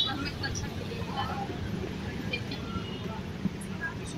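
Outdoor street background: a steady low rumble of motor traffic with faint voices murmuring.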